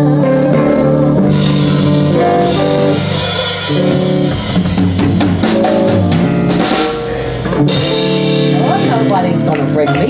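Live blues band with electric guitars and a drum kit playing the closing bars of a song. About seven and a half seconds in there is a short drop and then a loud hit, followed by a held chord ringing out as the song ends.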